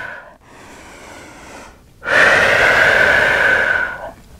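A woman breathing: a soft breath for the first two seconds, then a long, loud exhale of about two seconds that stops at the end.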